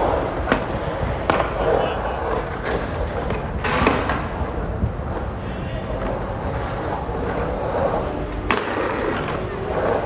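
Skateboard wheels rolling and carving around a concrete bowl in a steady rumble, with a few sharp clacks along the way.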